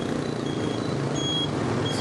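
Motorbike engine and city traffic running steadily while riding among scooters, with a few short, high-pitched beeps at different pitches.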